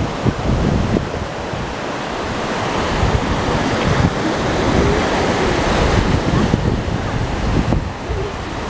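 Surf washing onto a sandy beach as a steady rush, with wind buffeting the microphone in low, irregular gusts.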